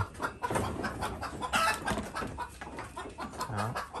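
Chickens clucking, a run of short, irregular calls.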